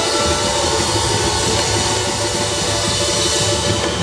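Live samba band playing a fast beat, the drum kit and its cymbals prominent in a bright, dense wash of percussion.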